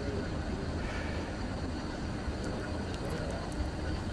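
Steady low background hum and rumble, with a couple of faint ticks past the middle.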